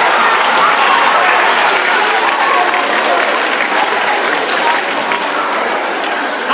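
A large audience applauding in a hall, with voices mixed into the clapping; it tails off slightly toward the end.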